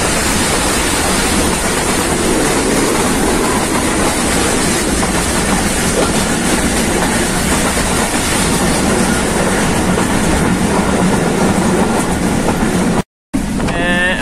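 Running noise of a moving passenger train heard from inside a coach by an open window: a loud, steady rumble and rush of wheels on rails. It breaks off abruptly near the end.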